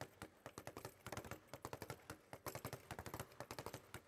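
Speed bag punched continuously, the bag rebounding back and forth off its wooden rebound platform in a fast, uneven run of faint knocks, several a second.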